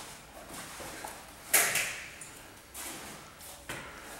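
Two grapplers scuffling and shifting their bodies on interlocking foam mats. The noise is faint and irregular, with one short, sharp burst about a second and a half in.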